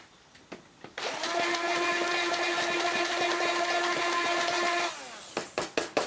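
Handheld immersion (stick) blender running for about four seconds in a stainless steel bowl of vinaigrette, a steady motor whine while it blends and emulsifies the dressing, then stopping, followed by a few knocks.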